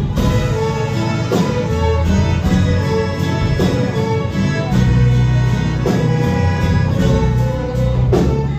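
Live ensemble of violins and guitars playing a hymn, with a steady bass line and a regular beat.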